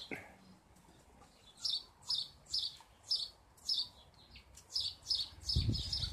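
A small bird chirping over and over, short high chirps about two a second, starting a second or two in, with a low bump near the end.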